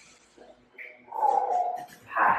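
A short drawn-out voice-like sound a little after a second in, following a quieter start.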